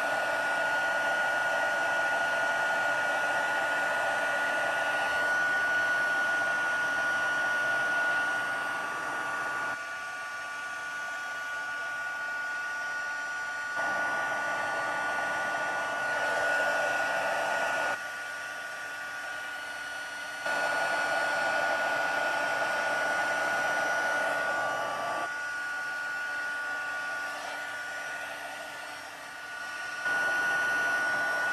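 Embossing heat tool blowing hot air with a steady high fan whine, melting white embossing powder on cardstock. Its level dips for a few seconds three times.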